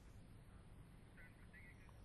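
Near silence, with a few faint, brief high-pitched sounds in the second half.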